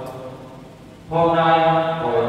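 A priest's voice intoning a liturgical prayer into the ambo microphone: a brief pause, then a steady held chanted note from about a second in.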